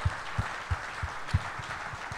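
Light applause from a small live audience, with a few single claps standing out.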